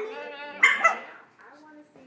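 Yorkie puppy giving two quick barks about half a second in, barking up at its owner as if answering her.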